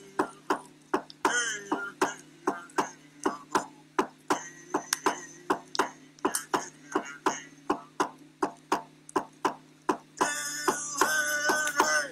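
A frame hand drum struck with a beater in a steady, even beat, about two to three strokes a second, with a man singing over it at the start and again, more strongly, near the end.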